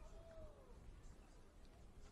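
Near silence: faint background ambience, with one faint short falling call near the start.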